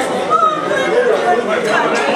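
Crowd chatter: many people talking at once in a room, with no single voice standing out.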